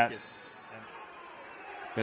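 Arena sound of a basketball game under the commentary: a low murmur of crowd and court noise, with a short knock near the end.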